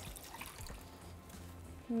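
Water poured from a stone molcajete into a pan of ground beef, beans and salsa: a faint trickle and splash over quiet background music.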